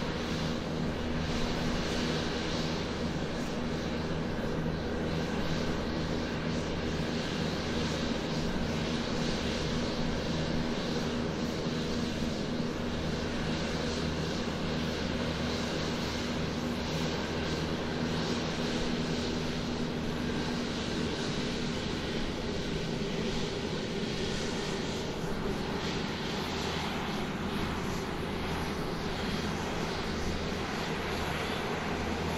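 Steady drone of an Airbus A320 airliner, a low, even hum with a hiss over it.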